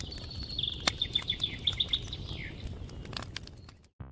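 Small birds chirping in a quick run of high, rapid chirps for about the first two and a half seconds, over a low steady outdoor rumble with scattered clicks.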